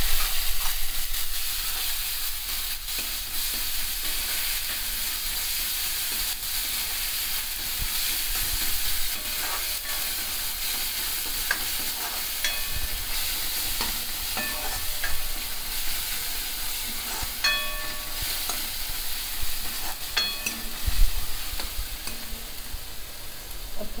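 Chopped onions frying in hot oil and ghee in a kadhai, a steady sizzle, while a steel ladle stirs and scrapes through them, with a few short ringing clinks of the ladle against the pan.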